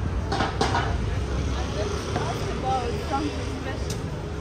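City street ambience at night: a steady low rumble of traffic under snatches of passers-by talking. Two short knocks come just after the start.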